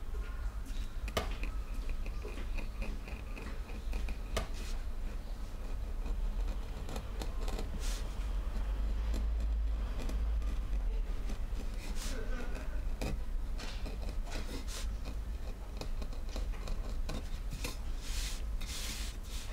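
Small hand chisel cutting into a wooden printing block: a scatter of short, irregular clicks and scrapes as the blade bites and is pushed through the wood, over a steady low hum.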